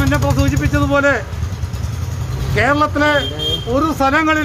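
A man speaking Malayalam in two phrases over the low, pulsing rumble of a nearby motor vehicle engine, which fades out about two and a half seconds in.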